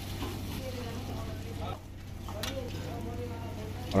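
Dal makhani sizzling as it hits a pan of hot butter and ghee tempering, stirred with a metal ladle; the sizzle dips briefly about halfway through.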